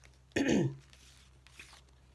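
A person clears their throat once, a short burst about a third of a second in.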